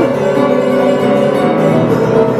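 Worn-out old upright piano, front panels removed and hammers exposed, played with both hands in a continuous tune.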